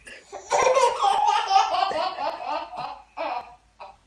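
Baby laughing in a long run of belly-laugh pulses lasting about two and a half seconds, then one short burst of laughter near the end.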